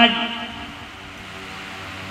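A man's voice through a public-address system trails off at the start, then a pause filled by the PA's steady low hum and background noise.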